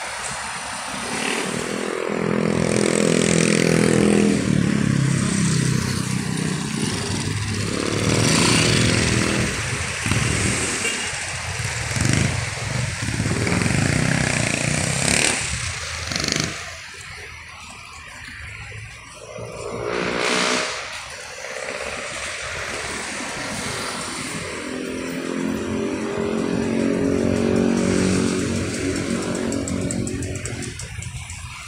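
Street traffic: engines of passing motor vehicles running, swelling and fading several times as they go by. One vehicle passes close about twenty seconds in.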